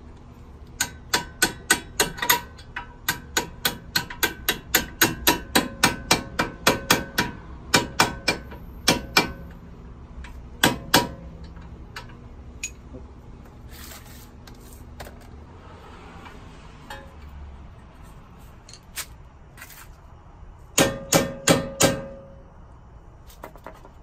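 Hammer striking a steel socket extension to drive out the lower strut bolt on a Honda Civic's front suspension. Sharp ringing metal blows come fast, about three or four a second, for the first nine seconds, then a pair near eleven seconds and a quick burst of about five around twenty-one seconds. The bolt does not drive out under the blows alone.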